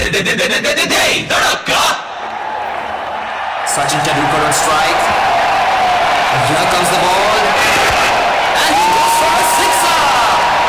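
Dance music ends in a few sharp beats, then a crowd of voices shouts and cheers in a large hall.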